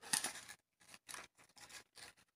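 Medicine packaging being handled close to the microphone: several short bursts of rustling, with brief gaps between them.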